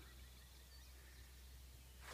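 Near silence: faint outdoor ambience with a steady low hum.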